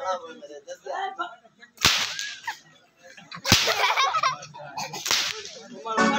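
Three sharp whip cracks, about a second and a half apart.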